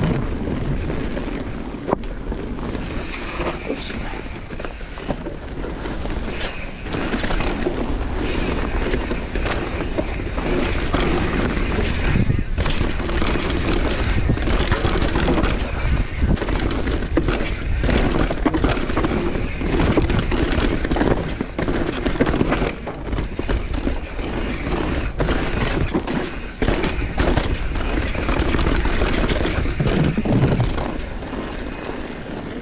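Propain Spindrift mountain bike ridden fast down a rough dirt trail, heard from a camera on the bike and rider. The tyres run over dirt and roots with a steady rumble, and the bike rattles and knocks sharply and often over bumps and impacts.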